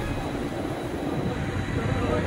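Steady rumbling wind and sea noise on the deck of a moving ship, with wind buffeting the microphone over the rush of water along the hull.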